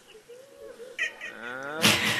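A man's voice through a PA microphone in a weeping, sung Bangla waz delivery: after a faint pause, a wordless wail starts about a second in and rises steadily in pitch, breaking into a loud sung cry near the end.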